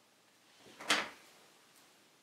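A short rustle building into a single sharp knock a little before a second in: a pen set down on the desk.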